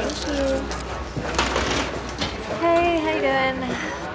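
Busy café sound: people talking indistinctly, with small clinks and a short hiss about one and a half seconds in.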